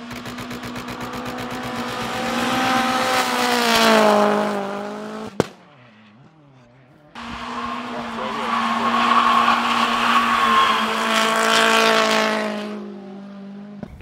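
Ford Focus RS RX rally car's turbocharged four-cylinder engine held at high revs while drifting, the note rising and falling, with tyre noise above it. It runs in two stretches, broken by a click and a short lull a little past five seconds in.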